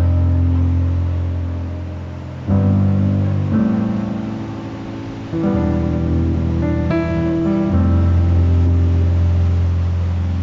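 Background music: an acoustic guitar strumming sustained chords, moving to a new chord every second or two.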